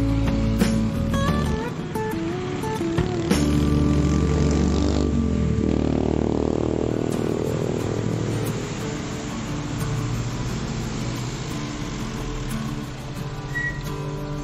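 Background music playing over road-traffic noise: a large coach bus's engine running as it pulls slowly out toward the road, with a motorcycle passing.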